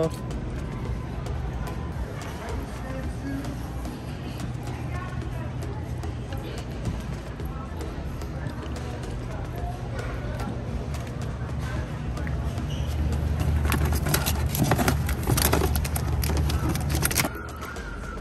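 Warehouse store background: a steady low rumble with indistinct voices and music, and many small clicks and knocks that grow louder about thirteen seconds in, then stop suddenly shortly before the end.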